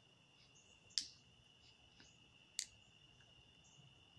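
Faint steady chirring of crickets, with two sharp clicks about a second apart and a half apart, the first about a second in.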